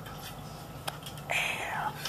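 A man's short, breathy gasp just after the middle, after a swig of straight whiskey from the bottle; a faint click comes shortly before it.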